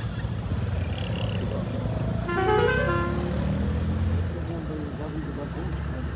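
A vehicle horn sounds once, briefly, about two seconds in, its pitch shifting in steps, over a steady low rumble and distant voices.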